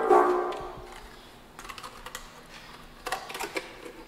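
A bassoon's low note ends and rings off in the hall over about a second. Then come two short runs of light, irregular clicks from the bassoon as it is handled.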